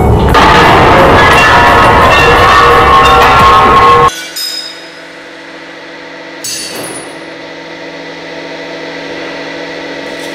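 A glass vase shattering under a hydraulic press: loud crashing and crunching of breaking glass for about four seconds that cuts off abruptly. A much quieter steady hum follows, with a brief clink about six and a half seconds in.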